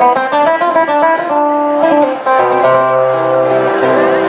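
Flamenco guitar playing a solo passage between the sung lines of a media granaína. It opens with a quick run of notes, then moves to slower picked melody notes over a held low bass note.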